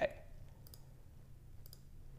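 Computer mouse clicking twice, about a second apart: short, faint, sharp clicks.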